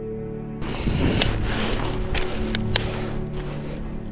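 Ambient background music. From about half a second in, a steady rushing noise joins it, with four sharp clicks of rappelling gear (carabiners and a belay device on a fixed rope).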